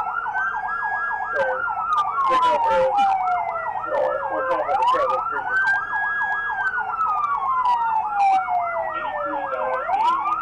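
Two police car sirens sounding at once: one in a slow wail that rises, holds and falls over about five seconds, the other in a fast yelp warbling about three to four times a second. A few short clicks and faint voices come through in the middle.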